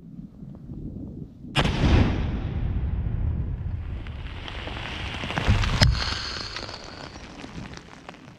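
Controlled detonation of unexploded Soviet-era rockets: a sudden loud blast about one and a half seconds in, followed by a long rumble that slowly dies away, with a second sharp bang about four seconds later.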